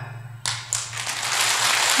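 A large seated audience applauding. The clapping starts about half a second in and builds.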